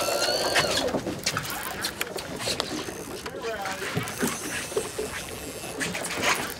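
A fishing reel whirring with a wavering whine for about the first second while a hooked fish is fought, then stopping. After that there are scattered short clicks and knocks.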